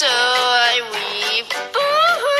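Cartoon character singing loudly with vibrato: one long held note that slides down in pitch, then a new sung phrase beginning near the end.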